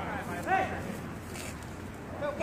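Basketball players' voices calling out, with one short, loud shout about half a second in, over steady background noise.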